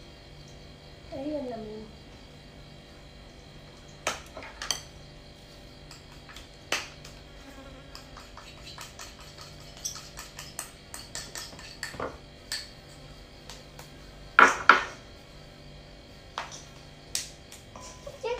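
Scattered clinks and knocks of a small ceramic bowl and hands against a stainless steel mixing bowl, the loudest a double clatter about three-quarters of the way through, over a steady faint hum.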